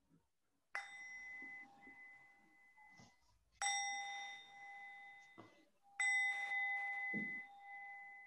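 A small metal meditation bell struck three times, about every two and a half seconds, marking the end of a silent meditation. Each strike rings on in a clear, slowly fading tone. The second and third strikes are louder than the first.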